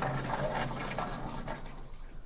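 Vertically sliding chalkboard panels moving in their frame as they are pushed and pulled into place: a continuous scraping, rolling noise with a low steady hum, fading out near the end.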